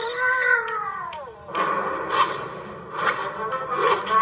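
Cartoon soundtrack played through a screen's speaker: a long meow-like cry that falls in pitch over about a second and a half, then music and sound effects.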